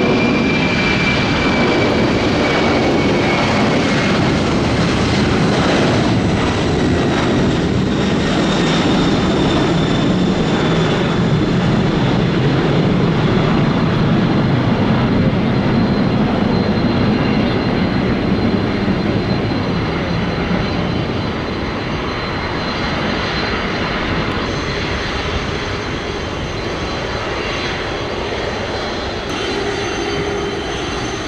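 Four jet engines of a Boeing 747 freighter at takeoff power through the takeoff roll and climb-out: a loud, steady engine noise with a high whine that slides slightly down in pitch in the first few seconds. The sound slowly grows fainter over the last ten seconds as the plane climbs away.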